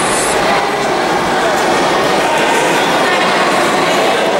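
Steady chatter of many voices at once, echoing in a large sports hall.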